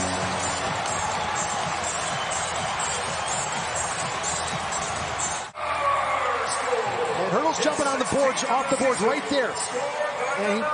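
Arena crowd cheering and yelling after a home overtime goal, with the last of a goal horn cutting off right at the start. About five and a half seconds in it cuts abruptly to quieter rink sound from the replay, with sharp taps and scrapes.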